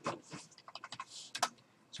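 Computer keyboard being typed on: a handful of short, irregular keystroke clicks.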